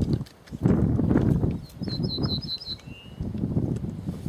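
An ortolan bunting sings one short phrase about two seconds in: a quick run of five or six high, ringing notes, then one lower, drawn-out note. Louder low rumbling gusts of wind on the microphone come and go around it.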